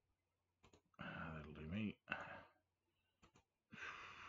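Computer mouse button clicks: two quick double clicks, the first just over half a second in and the second about three seconds in, as menu items in the software are clicked. Between them comes a short wordless vocal murmur, and near the end a breathy exhale.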